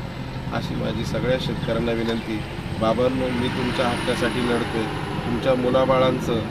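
A man speaking in Marathi, over a steady low rumble.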